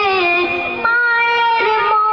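A boy singing a Bengali gojol (Islamic devotional song) into a microphone, holding a long note and then stepping up to a higher held note just under a second in.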